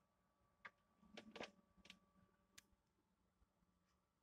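Near silence: a few faint clicks in the first half over a faint steady hum.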